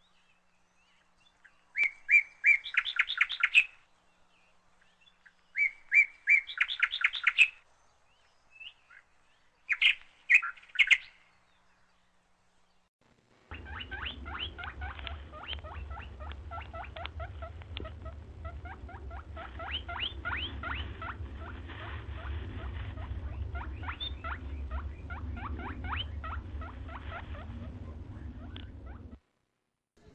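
Songbirds singing: three short phrases of rapid repeated high notes a few seconds apart, then from about thirteen seconds a continuous chorus of chirping birds over a low steady rumble, which cuts off suddenly shortly before the end.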